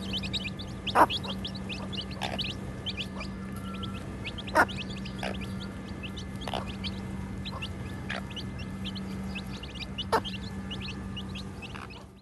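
A brood of young chicks peeping continuously: many rapid, short, high chirps, with a few louder sharp sounds about a second in, near the middle and near the end, over a steady low hum.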